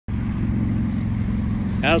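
A steady, low engine hum that holds one even pitch.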